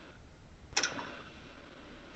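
Quiet pause on a video-call line: faint steady background hiss, with one short sound about three-quarters of a second in.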